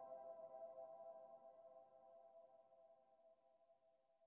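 Faint background ambient music: a held chord fading out to near silence.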